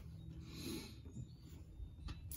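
Quiet: a thin stream of gear oil trickling from a scooter's transmission fill hole into a plastic drain jug, over a low steady hum.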